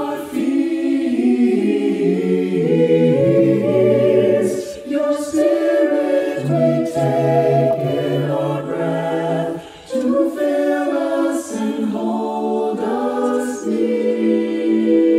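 Mixed-voice a cappella choir singing in close harmony, held chords moving from one to the next, with a brief break about ten seconds in.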